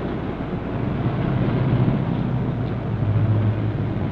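City street traffic: vehicle engines running in a steady, loud low rumble that starts suddenly and swells a little partway through.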